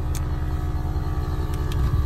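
Vehicle engine idling with a steady low rumble, heard from inside the minibus with its side door open. A few faint clicks sound over it.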